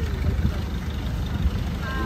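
A Thai longtail boat's exposed engine running steadily, driving the propeller on its long tail shaft, heard as an even low rumble.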